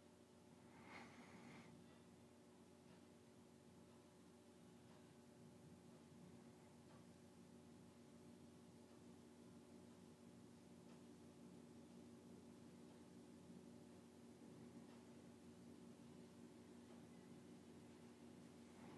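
Near silence: faint room tone with a steady low hum, and one brief breath about a second in.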